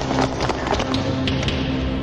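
Quick, irregular footsteps of people running down a stairwell, over a film score.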